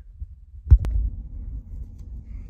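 A single low thump about three quarters of a second in, followed at once by a sharp click, over a steady low rumble.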